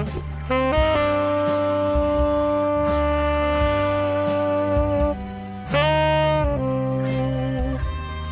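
Tenor saxophone playing an enka melody over a karaoke backing track: one long held note from about a second in, lasting some four seconds, then a short phrase and another held note near the end.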